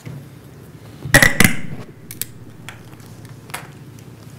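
Handling noise at a wooden lectern close to its microphone: two sharp knocks about a second in, then a few lighter clicks as things are set down and moved on the lectern.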